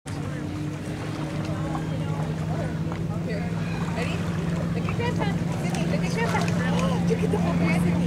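A steady low motor hum, with faint distant voices through the middle of it.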